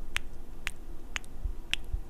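Close-miked wet kissing sounds: lips puckering and smacking against the microphone, four sharp smacks about half a second apart.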